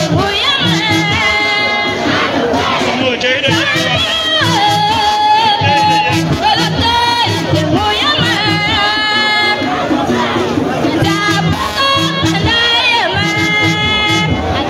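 Singing over music with a steady beat, mixed with the noise of a large crowd cheering and shouting.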